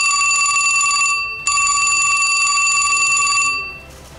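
Old-style telephone bell ringing as a sound effect, an unanswered call: a ring of about a second, a short break, then a second ring of about two seconds that fades out.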